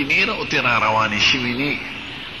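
Speech only: a man talking in Pashto.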